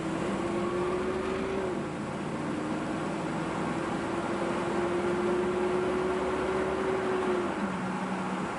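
1977 Chevrolet Corvette's 350 small-block V8 accelerating, heard from inside the cabin over steady road noise. Its pitch climbs, dips about two seconds in, climbs slowly again and drops sharply near the end as the three-speed automatic shifts up.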